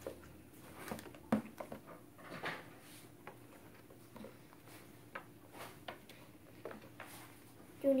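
Scattered light clicks and taps of plastic Play-Doh tools and moulds being handled on a glass tabletop, a few knocks a second at irregular spacing.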